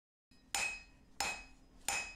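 Blacksmith's hand hammer striking iron being forged, three blows about two-thirds of a second apart, each leaving a brief metallic ring.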